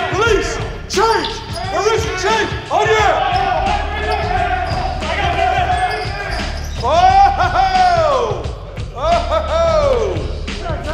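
Basketball practice on a hardwood court: sneakers squeak again and again as players cut and stop, with ball dribbles and thuds among them. The longest, loudest squeal comes about seven seconds in, and another near the end.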